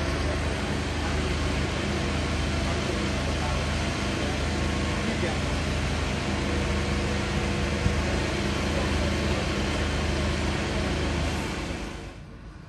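Steady outdoor background noise with a low, engine-like mechanical hum underneath, ending abruptly near the end.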